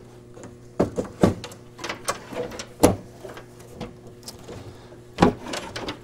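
Wooden rear cover panel of a Seeburg jukebox being set into place against the cabinet: a series of short knocks and clunks, the loudest near three seconds in and another about five seconds in.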